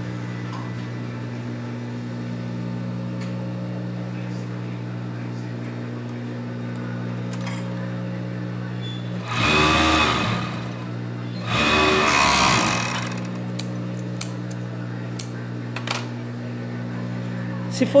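Industrial overlock (serger) machine stitching in two short runs of about a second and a half each, about halfway through, as a knit cuff seam is sewn. Between the runs a steady low hum continues.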